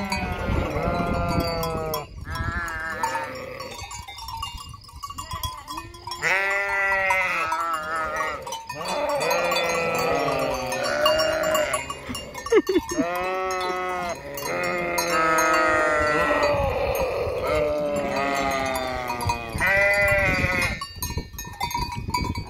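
A flock of sheep bleating, many loud calls overlapping one after another, some of them quavering. There is a short lull about four seconds in before the calling picks up again.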